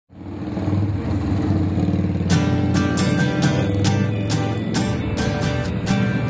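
Opening of a pop-punk band's song: a low sustained chord fades in, and a little over two seconds in the drums join with steady, evenly spaced cymbal hits.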